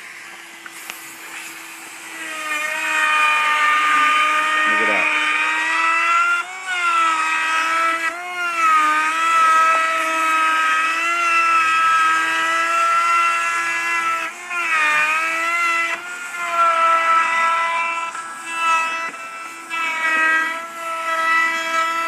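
Compact trim router cutting a decorative groove into a three-quarter-inch MDF raised panel along a jig on its second pass: a steady high motor whine that grows louder about two seconds in and dips briefly in pitch a few times as it is pushed through the cut.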